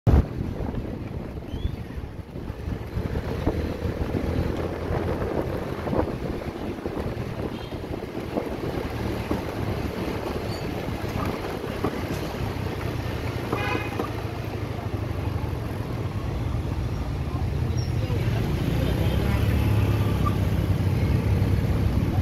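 Street traffic noise: a continuous low rumble of car and motorbike engines with wind on the microphone, growing louder towards the end.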